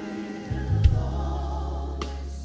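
Gospel choir singing with a band. A deep bass note comes in about half a second in, and a single sharp knock sounds just under a second in.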